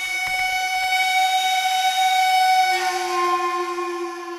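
A loud, sustained drone of several steady held tones, like a held chord, shifting to a new set of tones about three seconds in, with a few faint clicks at the start.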